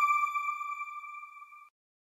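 The decaying ring of a single bright electronic chime, the sound logo of an end card, holding one pitch as it fades out about one and a half seconds in.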